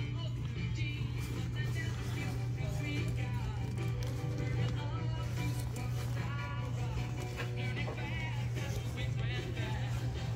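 Background music with a singing voice, over a steady low hum.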